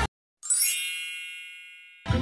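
A single bright, bell-like ding about half a second in, after a moment of dead silence. It rings with many high overtones and fades away over about a second and a half.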